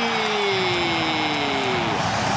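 A commentator's long, drawn-out goal shout, held for over a second and sliding slowly down in pitch, over a stadium crowd cheering a goal.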